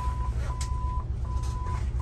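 Boat engine rumbling in the wheelhouse, with a steady high beep sounding on and off about every three-quarters of a second, three times.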